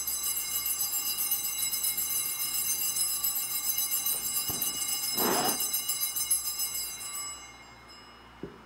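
Altar bells, a set of small hand bells, shaken continuously in a rapid shimmering ring that dies away about seven seconds in. The ringing marks the elevation of the host at the consecration.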